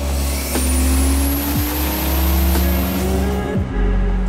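Toyota Chaser drift car driving at speed, its engine note climbing steadily under acceleration with a faint high whistle rising alongside, over a loud rush of wind and road noise.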